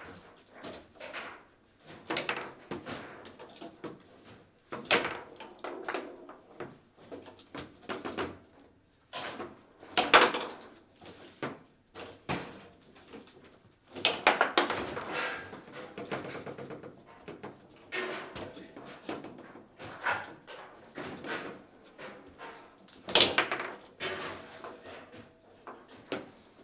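Table football in play: irregular sharp knocks and clacks as the ball is struck by the rod figures and bounces off the table. The loudest hits come about ten seconds in and again a few seconds before the end.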